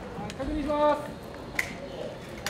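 A short voiced sound from a person, then a single sharp click about one and a half seconds in.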